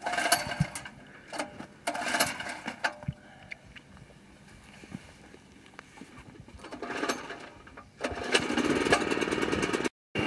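Small portable generator being pull-started: a few short cranking bursts on the recoil cord, then it catches about eight seconds in and settles into a steady run.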